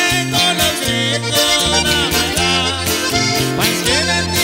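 Sierreño band playing an instrumental passage live: button accordion, acoustic guitar and electric bass, with a steady bass line underneath.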